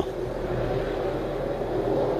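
Steady mechanical hum of rooftop air-conditioning units running, with a faint constant tone over a low rumble.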